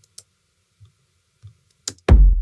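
A few faint, separate computer-mouse clicks, four in all, the last one louder, in a pause between plays of the kick-drum loop.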